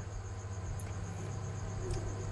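An insect trilling steadily in the background, a high tone in fast, even pulses, over a low steady hum.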